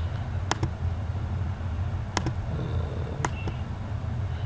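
Computer mouse button clicked three times, each a sharp click pair about a second and a half apart, over a steady low hum.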